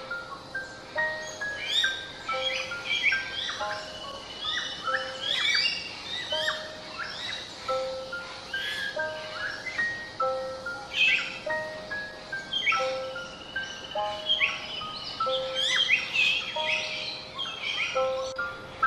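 Common hill myna calling: sharp, sweeping calls come in clusters every couple of seconds, over background music with steady held notes.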